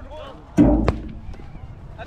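A timekeeping drum struck once about half a second in, one of the steady beats every second and a half that count the 'stones' of play in a jugger match, followed by a sharp knock; players' voices call out around it.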